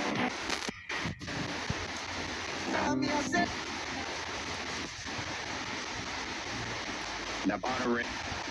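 S-box spirit-box ghost scanner giving off a steady hiss of radio static, with two brief snatches of voice cutting through it, about three seconds in and near the end.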